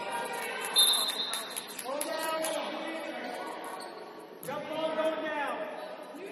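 Voices shouting across a reverberant gymnasium during a basketball game, two drawn-out calls whose pitch falls at the end. Around them are short court sounds, with a brief high squeak about a second in.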